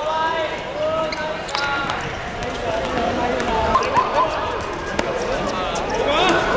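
Players shouting and calling to each other on a hard outdoor football court, with sharp knocks of the ball being kicked and bouncing, the strongest about five seconds in.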